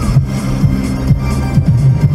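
Electronic music with a steady beat and a repeating bass line, playing on a car radio inside the cabin.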